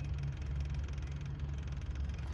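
Kubota U55-5 mini excavator's diesel engine, newly replaced, running steadily at idle with the engine bay open.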